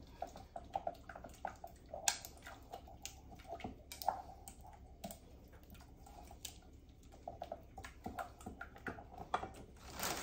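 A utensil stirring thick pudding in a metal mixing bowl, scraping and tapping against the bowl in many small, irregular clicks.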